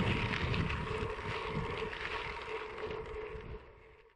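Wind buffeting the microphone over a low rumble and a faint steady hum, fading out near the end.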